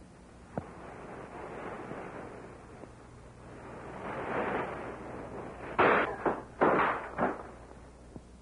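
Four loud bangs in quick succession near the end, after a swell of rushing noise, on an old film soundtrack.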